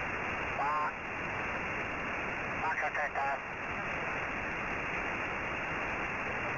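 Hiss from an SSB receiver tuned to the QO-100 satellite's narrowband transponder, with two brief snatches of a faint voice on the band, about a second in and about three seconds in.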